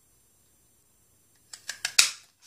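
Stampin' Up! Petite Petals handheld paper punch cutting a flower out of cardstock: near silence, then a few light clicks about a second and a half in and a sharp snap at the end as the punch goes through.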